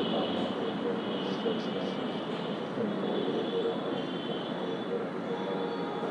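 Indistinct voices over a steady background din, with a faint, steady high-pitched whine running through it.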